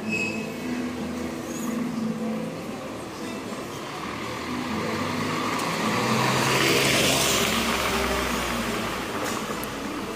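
A car driving slowly past close by on a paved street: its noise swells to its loudest about seven seconds in, then fades.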